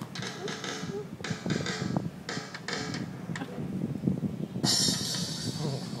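Drum-kit app on a tablet tapped at random by a baby: irregular cymbal crashes with drum hits under them, in no steady rhythm, the brightest crash coming near the end.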